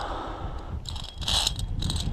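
Wind buffeting the camera microphone, a steady low rumble, with a brief scraping hiss about a second in.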